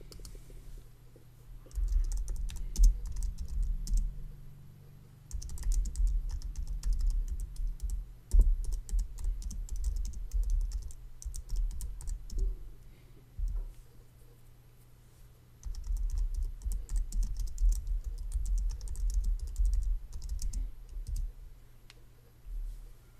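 Typing on a computer keyboard: three long runs of rapid key clicks with short pauses between them, over a faint steady low hum.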